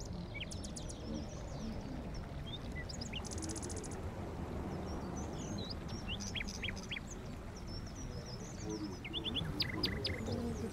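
Small birds chirping, many short falling chirps scattered through, with a quick rattling trill a little over three seconds in, over a steady low rumble.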